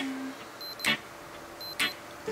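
A camera taking a series of shots: a quick double beep, then a shutter click, repeating about once a second, three clicks in all.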